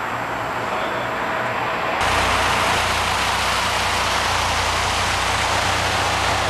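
Turbocharged LS VTEC four-cylinder in an Acura Integra running steadily at idle, with no revving. About two seconds in the sound steps up abruptly, louder and with more low rumble.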